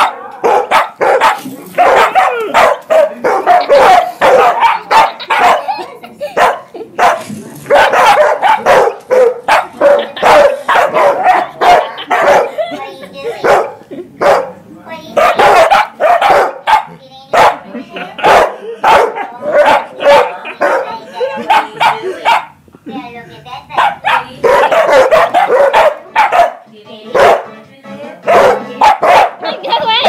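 A dog barking and yowling over and over in loud, pitched calls, with short pauses between runs.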